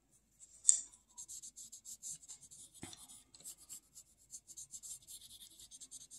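Prismacolor colored pencil shading on a small stack of paper: quick, scratchy back-and-forth strokes, several a second, with two light taps in the first three seconds.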